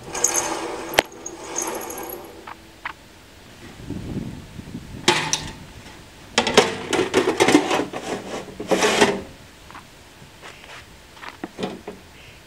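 Metal clattering and scraping from a band sawmill's steel blade being handled over its blade wheels and its sheet-steel blade cover being worked, in bursts over the first two seconds and again from about six to nine seconds, with a sharp click about a second in.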